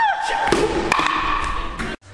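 Two sharp bangs, about half a second and a second in, with a girl's high squealing voice at the start. The sound cuts off suddenly at the end.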